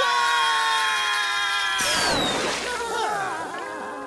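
Three cartoon voices screaming together in one long, held scream of pain from standing on a lit grill. About two seconds in a sudden crash-like noise cuts in, and the screaming carries on, fading near the end.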